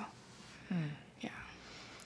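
A pause in conversation: faint room tone with one short spoken "mm" from a person's voice under a second in.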